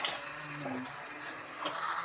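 Immersion blender running on its low setting, worked up and down through chunky squash soup; its motor hum shifts up and down in pitch as it moves.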